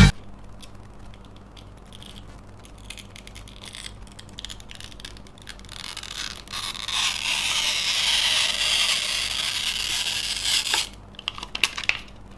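Adhesive backing film being peeled off the back of a small LCD panel's glass. Light scratching and handling clicks come first; about six and a half seconds in, a steady crackling tear runs for about four seconds and stops abruptly, followed by a few clicks. The discoloured film is the cause of the screen's 'burnt' look.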